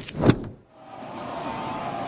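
Broadcast graphic transition sound effect: two sharp hits in the first half second, then a brief cut to silence. It gives way to the steady background noise of a stadium crowd.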